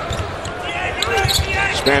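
A basketball dribbled repeatedly on a hardwood court, short low thumps over the steady murmur of an arena crowd.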